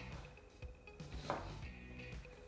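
A chef's knife dicing onion on a wooden chopping board: a few faint, separate knife strokes against the board, over quiet background music.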